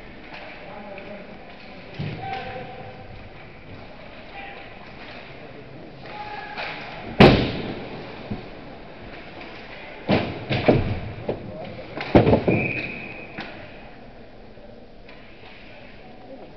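Ice hockey play: one loud, sharp crack about seven seconds in, then two quick clusters of knocks and thuds a few seconds later, from puck, sticks and players hitting the boards and ice, over faint voices.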